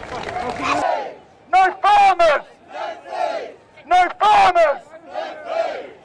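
Crowd noise for the first second, then a man chanting a slogan through a megaphone in loud, short shouted phrases, with softer shouts in between.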